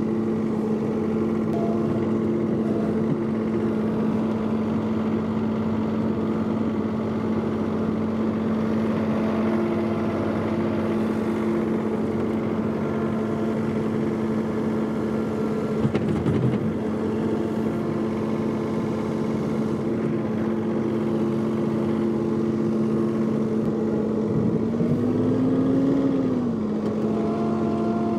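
John Deere 3046R compact tractor's three-cylinder diesel engine running at a steady speed while the loader moves snow, with a single knock about halfway through and a brief rise and fall in engine pitch near the end.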